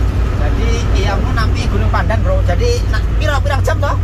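Men talking inside a moving car's cabin, over a steady low drone of engine and road noise.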